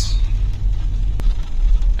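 Steady low engine and road rumble heard inside the cab of a moving vehicle, with a single sharp click a little past halfway.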